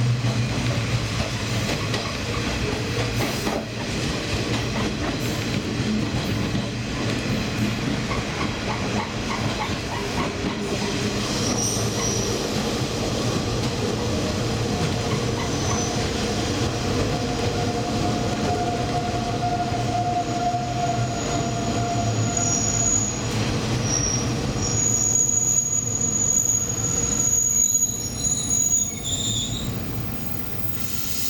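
Diesel train running along the rails, its wheels squealing in thin, high tones now and then. The squeal is heaviest in the last few seconds as it slows into a station, where it nearly stops.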